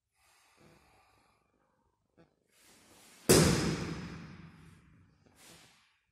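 Taekwondo athlete's forceful breath during a Keumgang poomsae: a sudden loud exhalation about three seconds in that fades away over about two seconds, with a shorter, softer breath near the end.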